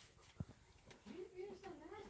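Faint cat meow: a drawn-out, wavering call starting about a second in.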